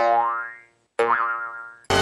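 A cartoon comedy sound effect played twice, a second apart: each a sudden pitched twang that slides upward and dies away within about half a second. Background music stops just before the first and comes back in at the end.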